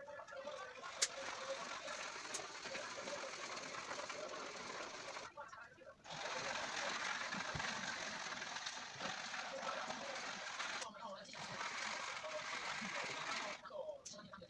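Rapid, continuous scratchy scribbling of a colour stick on paper, hatching in a background, with short pauses about five seconds and eleven seconds in.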